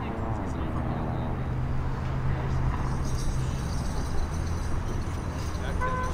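A pickup truck's engine running as it drives up and pulls in close, a low steady rumble that grows a little louder after about two seconds.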